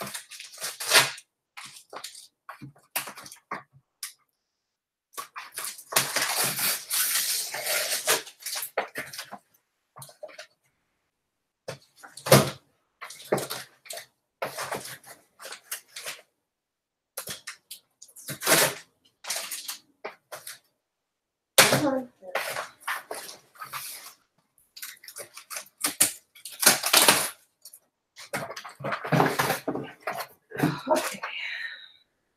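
Books and a cardboard box being handled while unpacking: stop-start rustling and knocks, with a few seconds of continuous rustling about six seconds in and sharp knocks near the middle.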